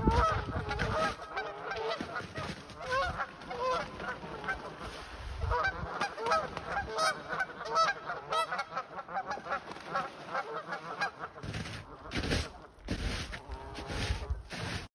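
Canada geese honking in a flurry of overlapping calls while they fight on the water. The calling thins out about eleven seconds in, and a few low rumbling bursts follow near the end.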